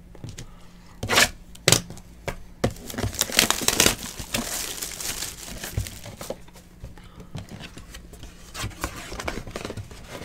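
Plastic wrapping being torn and crinkled off a sealed trading-card hobby box, with two sharp rips just over a second in, a dense stretch of crinkling around three to four seconds, and lighter rustling after that.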